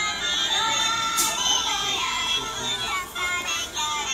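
Niloya plush doll's built-in speaker playing a children's song: a small electronic singing voice over a backing tune.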